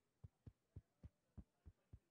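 Faint, quick run of soft low taps, about three or four a second and fairly even.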